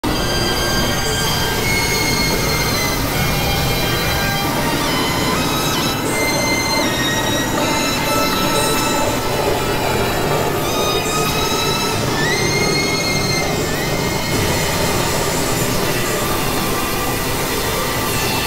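Experimental electronic noise music from synthesizers: a dense, steady wash of noise with thin high squealing tones layered over it that hold, jump between pitches and now and then slide up or down.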